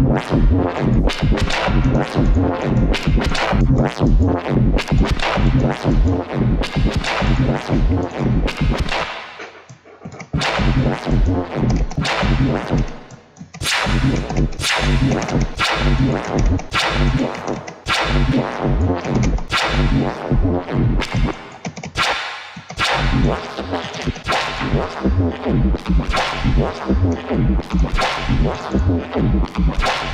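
Harmor synth bass, distorted through waveshapers and band-passed with automated, sweeping filter frequencies, playing back as a loop of rapid stabs with reverb on it. It drops out briefly twice, about ten and thirteen seconds in.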